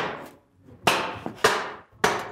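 Wooden club striking the blade of a shingle froe set in the end of a wood billet. Two sharp knocks a little over half a second apart drive the blade down to split the billet along its grain.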